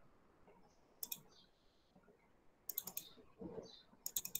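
Faint clicking at a computer: a few quick clicks about a second in, then a rapid run of clicks near three seconds, like keys or a mouse being pressed.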